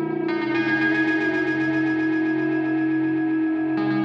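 Synthesizer with distortion and effects sustaining long held notes, the pitch changing to a new note about a quarter second in and again near the end.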